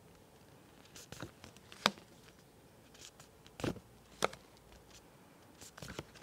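Flashcards being handled one at a time: faint soft taps and slides of card against card as each is moved through the stack, a handful of them spread across the seconds.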